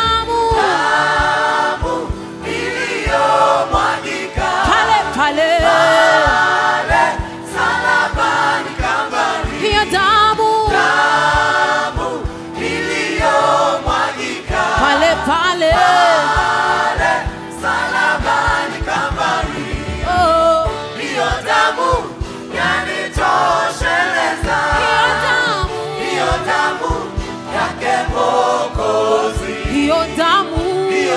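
Children's choir singing a Swahili gospel song, with instrumental backing and a steady beat.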